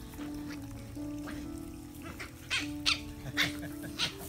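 Scottish terrier puppies and their mother at play, giving a few short yips in the second half, over steady background music.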